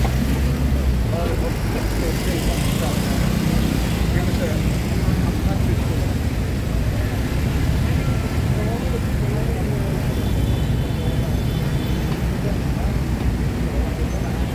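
Street ambience: a steady rumble of road traffic with several people talking indistinctly in the background.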